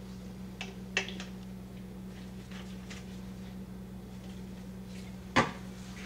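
Light clacks and a sharper knock of kitchen things being handled on a countertop, the knock loudest near the end, over a steady low hum.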